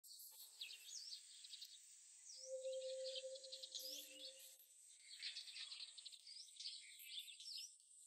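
Faint chirps of small birds, repeated short calls throughout as outdoor ambience. A faint steady hum joins for about two seconds in the middle.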